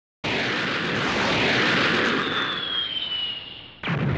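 Animation sound effects: a loud rushing noise begins suddenly, with a high whistle sliding down in pitch over its second half, then a sudden blast just before the end.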